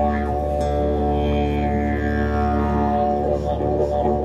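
Didgeridoo droning one steady low note, its upper overtones sliding up and down as the player shapes the sound with his mouth.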